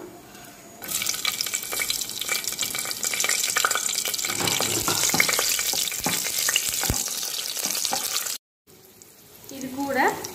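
Green chillies and whole spices sizzling and crackling in hot oil in a pressure cooker, stirred with a wooden spatula: the tempering stage of a biryani. The sizzle starts suddenly about a second in and cuts off suddenly near the end.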